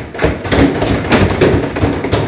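A roomful of people applauding, a dense clatter of hand claps that starts suddenly and cuts off about half a second after the end.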